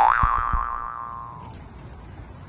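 Cartoon-style 'boing' spring sound effect: a springy pitched tone that swoops up, then wobbles and fades out over about a second and a half. Two short low thumps sound beneath it in the first half second.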